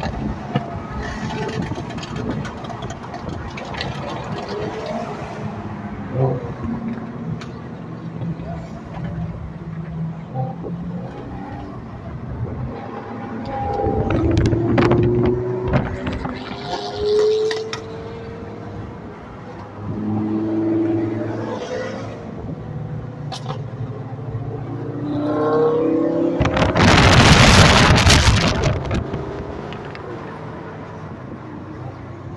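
Sports car engines revving and accelerating, heard from inside a moving car: a steady engine drone with several rising revs, and one long, loud rush of engine and exhaust noise near the end.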